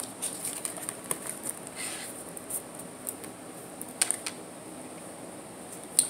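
Tarot cards being handled on a table: faint card slides and light clicks as cards are picked up and turned over, with a brief rustle about two seconds in and a couple of sharper clicks about four seconds in.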